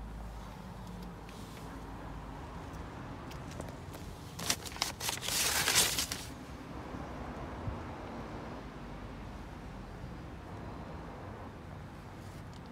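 A faint, steady low hum with a short, loud burst of rustling and crackling about four and a half seconds in, lasting under two seconds.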